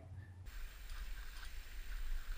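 Faint sound of a ski-tow ride: a low rumble with a steady hiss, starting about half a second in, with a few light ticks.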